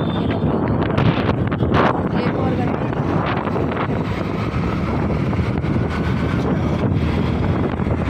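Heavy wind buffeting on a phone microphone while moving along a road, a steady low rumble with road traffic under it.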